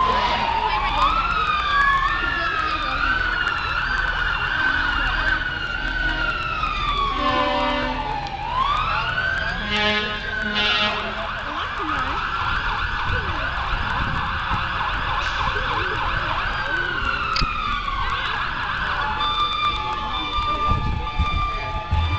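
Emergency-vehicle sirens wailing, several overlapping and rising and falling in pitch, with two short horn blasts about seven and ten seconds in.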